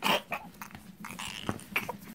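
A cartoon toddler whimpering and starting to cry, with a few small clicks from his toy. It starts suddenly and comes in short, uneven sobs.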